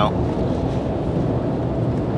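Steady engine and road noise inside a moving lorry's cab.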